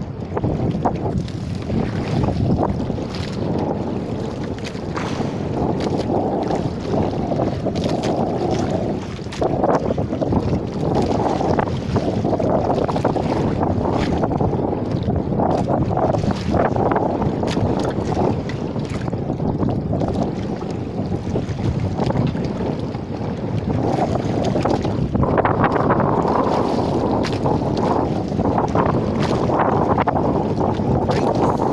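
Steady rumbling wind noise buffeting the microphone on an open boat at sea, rising and falling in strength.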